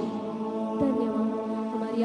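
A woman singing a slow Hindi Christian worship song in long, gliding held notes, over sustained electronic keyboard chords.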